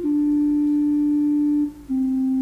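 Organ playing slow, sustained notes with a soft, flute-like tone: one note held for most of the time, then a step down to a lower note near the end.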